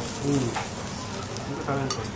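Food sizzling as it fries, a steady hiss, with brief snatches of voice over it.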